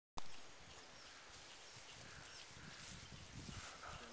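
Faint outdoor ambience: low rumbling from wind on the microphone, with a few faint, high, distant chirps, after a brief bump right at the start.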